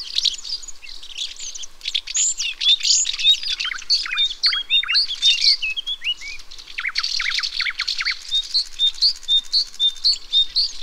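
Several European countryside songbirds singing and chirping over one another in a dense chorus. Around seven seconds in there is a quick run of downward-sliding notes, and near the end one bird repeats a short high note about three times a second.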